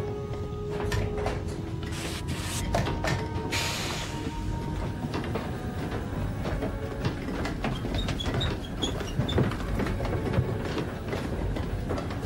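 Film soundtrack of a submarine interior: a steady low rumble with scattered metallic clanks and knocks, and two short bursts of hiss around three seconds in, under a music score.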